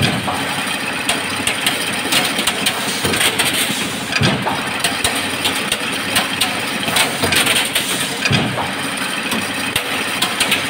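Chain link mesh making machine running, with a dense, steady clatter of many small metallic knocks over the drive's noise. A heavier low thump comes twice, about four seconds apart.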